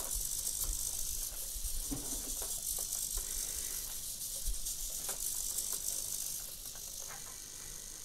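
MG90S micro servos of a small quadruped robot whirring as the robot gyrates its body in circles over its legs: a high, hissing buzz with a few faint ticks, changing about six and a half seconds in.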